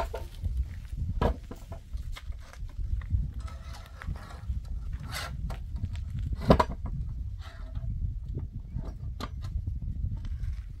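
Clicks, knocks and rattles of a wooden door and its metal latch being worked by hand, with one loud knock about six and a half seconds in, over a low rumble.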